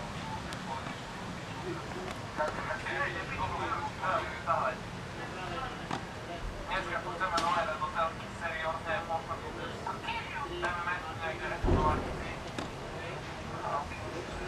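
People talking throughout, with a single dull thump about twelve seconds in.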